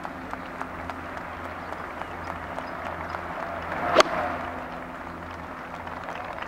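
A golf club strikes a ball out of a sand bunker with one sharp crack about four seconds in, over a steady wash of gallery crowd noise that swells around the shot and then fades.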